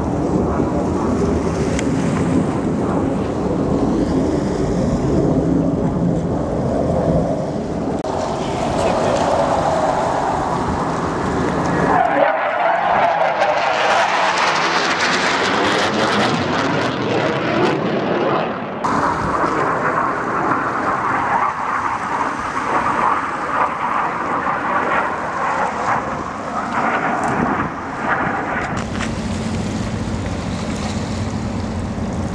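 Jet engines of Blue Angels F/A-18 Hornets flying past, a loud continuous noise whose pitch sweeps up and down as the jets pass. About twelve seconds in it turns sharply brighter and hissier for several seconds.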